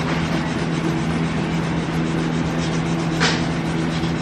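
A steady machine hum under a haze of noise, with a brief hiss about three seconds in.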